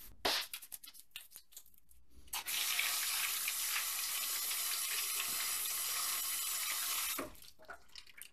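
A few light knocks and clicks, then a kitchen sink tap running steadily into the sink. It is turned on about two and a half seconds in and shut off about five seconds later.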